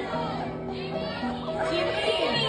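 Soft background music with a woman's voice over a microphone and the high-pitched voices of an audience in a hall.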